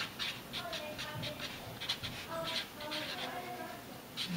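Felt-tip Sharpie marker writing on paper: a run of short scratching strokes with thin, wavering squeaks as each letter is drawn.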